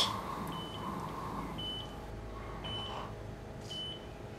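Hospital medical monitor giving a short high electronic beep about once a second, steady and regular, four beeps in all.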